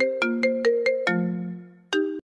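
Mobile phone ringtone: a quick tune of short, clear notes ending on a longer low note that fades, then the tune starting again near the end.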